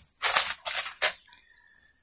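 Short crinkling rustles of plastic bags and a foam tray being handled on a table, three brief bursts within the first second, then nearly quiet.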